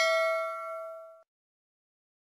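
Notification-bell sound effect of a subscribe-button animation: a single bell ding ringing out and fading away within about a second and a quarter.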